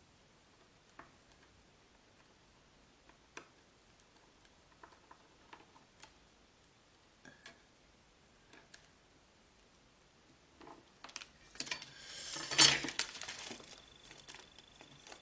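Sparse, faint light clicks of a Fuse heat-sealing tool's metal tip tapping against its metal guide ruler while sealing a plastic pocket. About eleven seconds in, this gives way to a louder rustle and crinkle of the plastic sheet being lifted and handled.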